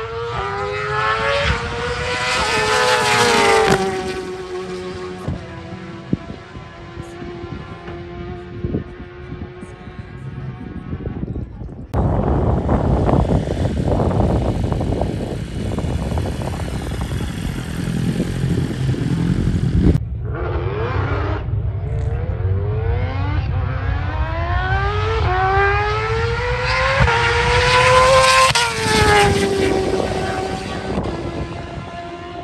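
Superbike engines at full throttle in drag-strip runs. Twice a bike accelerates away, its pitch climbing in steps with each gear change and then falling off as it passes. In between, a nearer engine gives a lower, rougher rumble.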